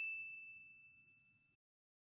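The ring of a single bright bell ding, struck just before, fading away over the first second and a half, followed by near silence.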